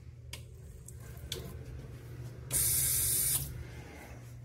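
Automatic sensor faucet running for just under a second, a loud hiss of water that cuts in and cuts off sharply, over a steady low room hum.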